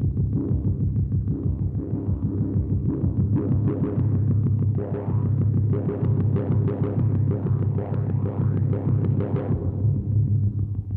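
Tense, throbbing soundtrack music: a fast pulsing low drone with a higher layer that builds from about three seconds in and cuts off suddenly just before the end.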